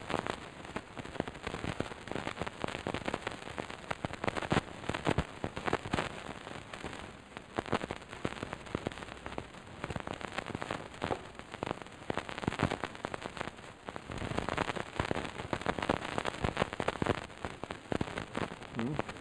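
Microphone handling noise: an irregular, dense crackle of small clicks and rustles, thicker in the last few seconds.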